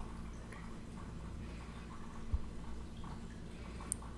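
Quiet room hum with faint handling of a cardstock pop-up card pressed between the fingers to set the glue, and one soft bump a little past halfway.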